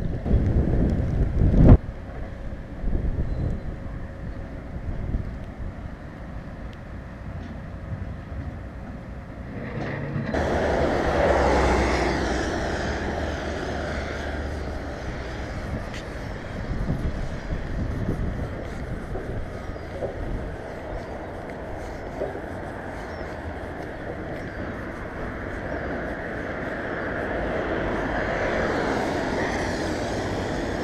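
Wind buffeting the microphone at first; from about ten seconds in, the steady noise of road traffic on a wet road, with one vehicle going by loudest a couple of seconds later and another coming up near the end.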